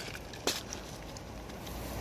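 Quiet outdoor background: a faint steady hiss with one short click about half a second in, and a low rumble coming up near the end.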